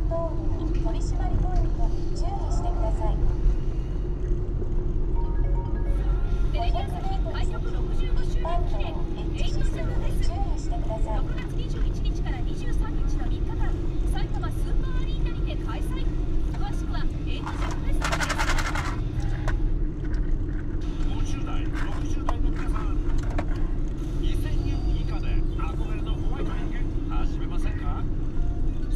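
Road and engine noise inside a moving car's cabin, a steady low rumble with a hum, while a car radio or TV plays music and voices underneath. A short buzzy burst comes about two-thirds of the way through.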